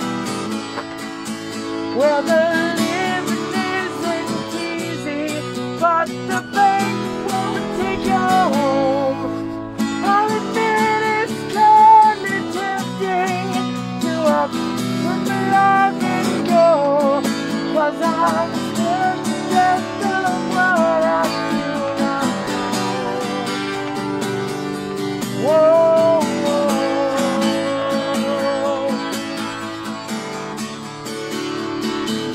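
A man singing through a surgical face mask while strumming a Takamine acoustic guitar.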